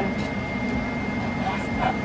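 A steady machine hum with a thin high whine, like a kitchen appliance or fan running, under soft strokes of a knife slicing through grilled steak on a plastic cutting board.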